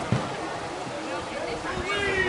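Indistinct voices of people talking and calling out, with no clear words.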